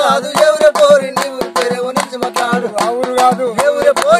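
Men's voices singing a Telugu kolatam village folk song, kept in time by sharp hand claps at an even beat of about four a second.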